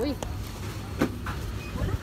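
Low rumble and rubbing of a phone microphone being handled against clothing, with one sharp click about a second in and faint voices in the background.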